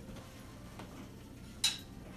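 Quiet kitchen room tone broken by a single short, sharp clink of kitchenware about one and a half seconds in.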